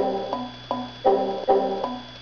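Computer alert chimes, the same pitched tone played about six times in quick succession, each cut off by the next, as warning and error dialog boxes pop up and are clicked away with OK.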